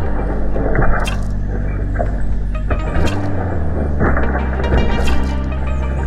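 Background music over the plastic clatter of a Lego train running on Lego track and crashing into a pile of Lego tires, the pieces rattling and scattering in several rushes.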